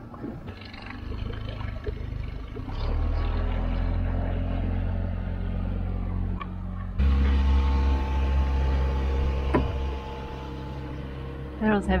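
Small outboard motor on an inflatable dinghy running steadily under way, pushing the boat along so its one-way Venturi bailer valve sucks out the rainwater it is full of. The hum comes in about three seconds in and gets abruptly louder about seven seconds in.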